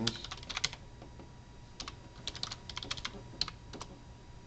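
Computer keyboard keys clicking as a short command is typed, in two quick runs of keystrokes: one at the very start and another from about two seconds in.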